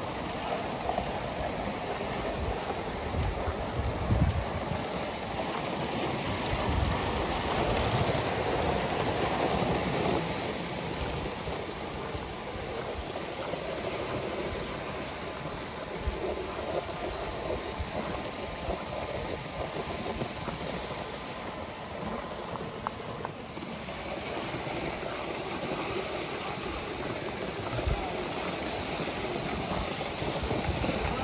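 Gauge 1 model trains running along the track: a steady rumble and hiss, a little louder in the first third.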